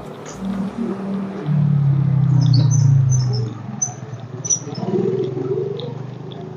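Small birds chirping in short high calls through the middle of the clip. Under them a louder low drone swells about a second and a half in and fades away about two seconds later.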